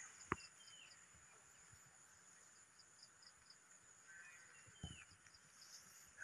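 Near silence: faint outdoor ambience with a few faint high chirps and ticks, and a single short click early on.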